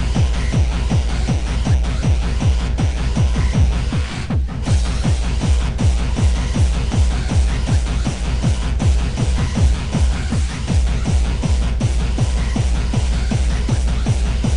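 Fast electronic tekno with a steady, heavy kick drum and dense percussion, with a brief break about four seconds in.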